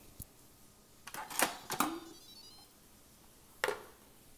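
Faint handling clicks and knocks around an Instant Pot heating on sauté: a small click at the start, a short cluster of knocks between one and two seconds in, and one more knock near the end, with low quiet between.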